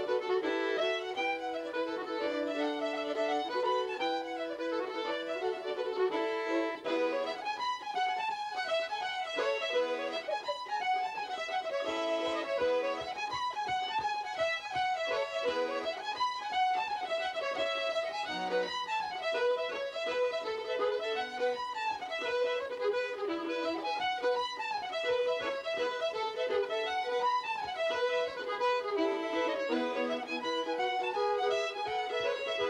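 Fiddles and a button accordion playing an Irish traditional tune together, a quick run of melody with no pause.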